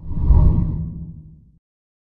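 A deep whoosh sound effect for a TV channel's logo sting, swelling in at once and fading out by about a second and a half in.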